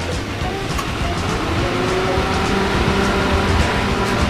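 A motor vehicle running steadily, slowly growing a little louder.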